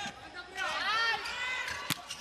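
Volleyball rally on an indoor court: sneakers squeak in quick rising-and-falling chirps, then the ball is struck once with a sharp smack near the end.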